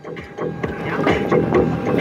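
Car engine and road noise heard from inside the cabin, swelling during the first second as the car picks up speed after a gear change.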